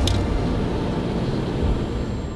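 Steady low rumble of road and engine noise inside a moving van's cabin, with a brief sharp click right at the start.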